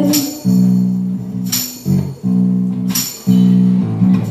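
Live guitar playing held low chords in an instrumental gap between sung lines, with a sharp percussive hit about every second and a half.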